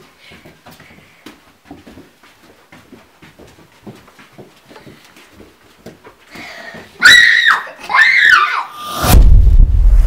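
Soft, regular footsteps of children walking on a carpeted hallway floor. About seven seconds in, a child gives several loud, high-pitched shrieks that slide up and down in pitch. Near the end comes a loud low rumble.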